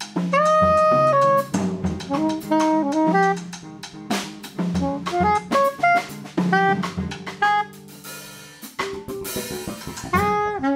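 Soprano saxophone playing a jazz melody in short phrases over a drum kit and a low bass line, as a small jazz trio.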